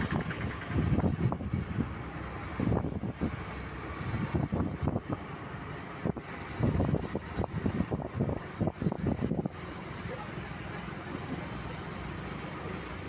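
Motorcycle and truck engines with road noise, the microphone buffeted by wind in irregular gusts; about nine and a half seconds in the gusts stop and a steadier engine drone remains.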